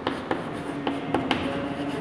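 Chalk writing on a blackboard: short taps and scratches as each letter of a word is written, with a steady low hum underneath.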